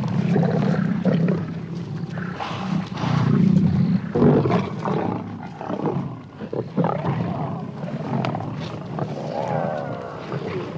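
Lions growling and snarling in a group at a small kill. The growls come in irregular bouts, loudest about three to four seconds in.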